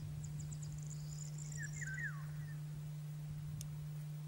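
Eurasian golden oriole giving a short fluting phrase of falling whistled notes about one and a half seconds in, overlapping a rapid run of very high, thin notes. A steady low hum runs underneath, with a single click near the end.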